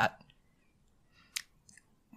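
Near silence with a single short, sharp click about one and a half seconds in, followed by a couple of fainter ticks.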